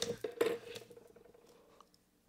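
A brushed stainless steel pen is handled and set down on a stone tile surface, giving a few light metallic clicks and taps in the first half second. The taps fade to near silence soon after.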